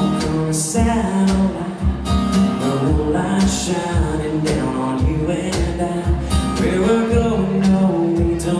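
Country song intro played on acoustic guitar and electric guitar, with a cajón keeping a steady beat.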